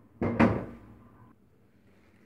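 A single short knock about half a second in, as a container is set down or handled on the tabletop.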